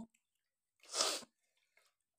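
One short breathy burst of air from a person, about a second in, lasting under half a second.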